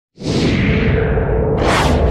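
Whoosh sound effects of an animated logo intro over a low rumble: a swoosh that starts suddenly and falls in pitch, then a second, rising swish near the end.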